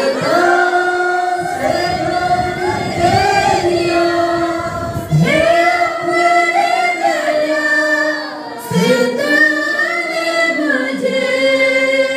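A mixed youth choir sings a Hindi Christian worship song together, with women's voices leading into microphones in long, held notes.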